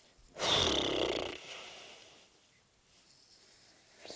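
A girl's short, loud, breathy vocal noise, not words, lasting about a second and trailing off.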